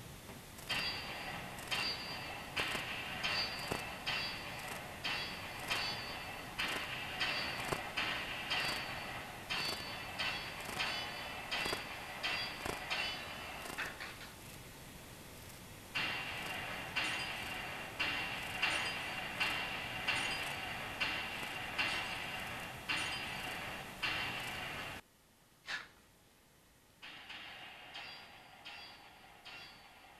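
Dry-fire pistol practice at a laser target simulator: a rapid string of sharp shot sounds, each with a short ringing tail, about one and a half a second. They pause briefly about halfway, stop abruptly near the end, and resume more quietly.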